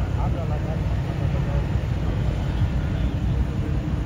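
Steady low rumble, with faint, indistinct voices talking at a distance in the first moments.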